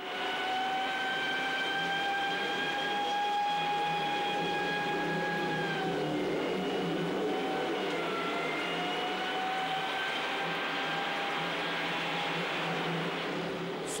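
Film soundtrack of a night-time ring-road traffic jam: a steady din of traffic with one long held tone over it, which sags in pitch about six seconds in and comes back about two seconds later.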